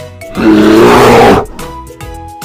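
A loud animal roar sound effect voicing a cartoon brown bear, lasting about a second, over children's background music.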